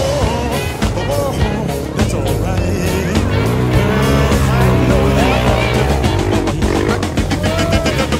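Background music over several off-road motorcycle engines revving as they labour.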